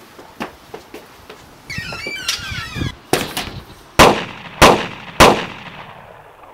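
Soft steps at first, then a brief high chirping, and in the second half three loud gunshots about 0.6 s apart, each with a ringing tail, the first two preceded by sharper cracks.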